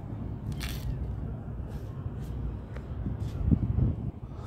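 Wind buffeting the phone's microphone: a steady low rumble that swells near the end, with a few faint clicks from the phone being moved.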